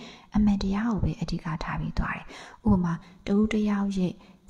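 Only speech: a woman talking steadily into a microphone, in phrases separated by short pauses.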